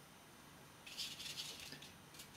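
A watercolour brush rubbing on paper as paint is worked on the palette: a faint, soft hiss that starts about a second in and lasts about a second.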